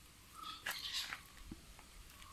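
A few faint, short whimpers from an Indian pariah puppy.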